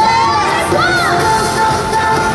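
Parade crowd cheering and shouting, with single voices rising and falling about a second in, over loud parade music.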